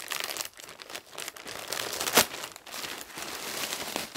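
Plastic poly mailer bag being torn open and crinkled by hand, with one short, loud rip a little past halfway.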